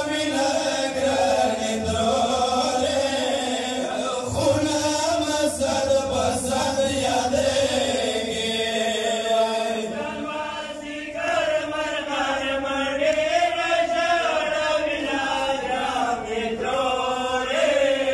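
Two male reciters chanting a Pashto noha, a Shia mourning lament, in a continuous melodic line.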